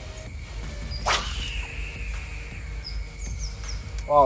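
A spinning rod swishing through a cast about a second in, then the line paying off the spinning reel's spool with a whine that falls in pitch as it slows. A few faint bird chirps near the end.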